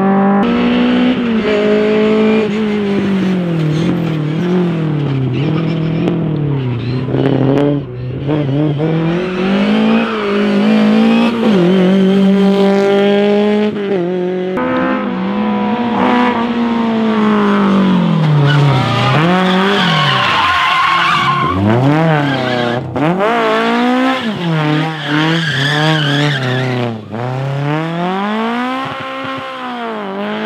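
Lada rally cars' four-cylinder engines revving hard through a tight slalom, the revs climbing and dropping again and again as they accelerate and brake between the markers, with tyre squeal. The second car runs a 1.6-litre 16-valve engine.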